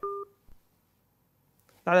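A short telephone-line beep, one steady tone lasting about a quarter of a second, as a phone call drops; the line then goes dead.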